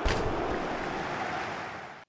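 A whooshing, surf-like swell of noise that peaks at the start and fades away over about two seconds: a transition sound effect marking a break between segments.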